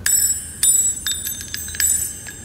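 A metal diamond ring dropped onto a hard surface, bouncing and clinking about five times, with the loudest strikes at the start, just over half a second in and near the end, each leaving a high, bright ring.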